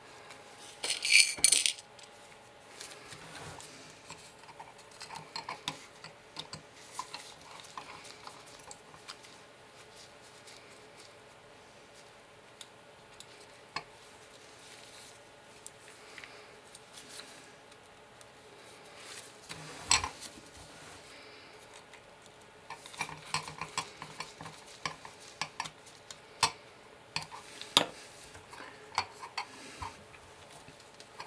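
Small clicks, taps and clinks of hard little parts and hand tools being picked up and set down on a desk during lens reassembly, with a short loud hiss about a second in.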